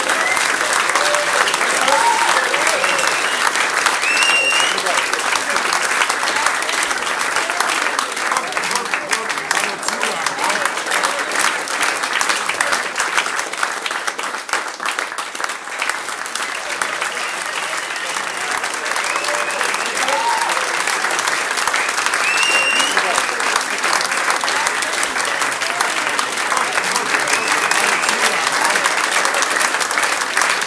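Live audience applauding and cheering after a song, with a rising whistle twice, once around four seconds in and again near twenty-three seconds.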